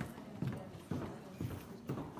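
Footsteps on a hard wooden floor, a steady walking pace of about two steps a second.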